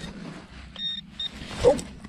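A metal detector giving short, high-pitched beeps, two brief tones about a second in, as it sounds over a target in the dug soil, with faint scraping and rustling of soil and grass.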